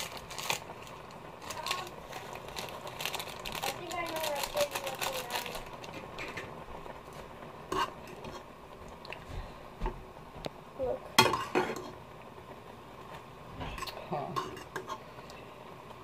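A utensil clinking, scraping and knocking against a cooking pot as ramen noodles are stirred, with dense rattling and clicking in the first several seconds and a few sharper knocks later.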